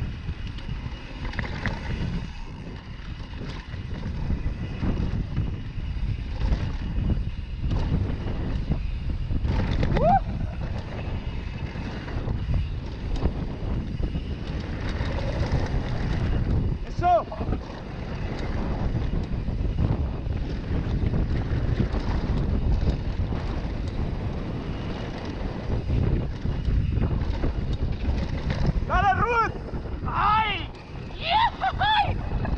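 Wind rushing over a bike-mounted action camera's microphone, with the rumble and rattle of a downhill mountain bike's tyres and frame on a dirt trail. A few short squeals come about ten seconds in, at about seventeen seconds, and near the end.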